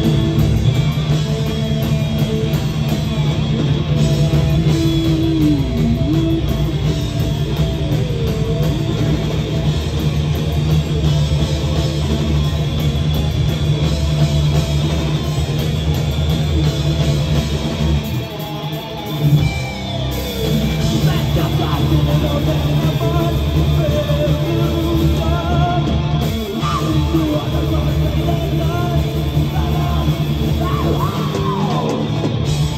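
A heavy metal band playing live, heard from the audience: distorted electric guitars over bass and drums. The sound drops briefly about two-thirds of the way through, then the full band comes back in.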